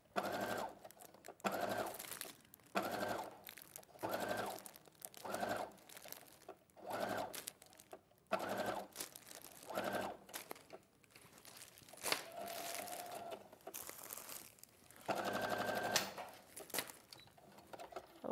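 Domestic sewing machine stitching a seam in short stop-start runs, about a dozen bursts of roughly a second each, with two somewhat longer runs past the middle.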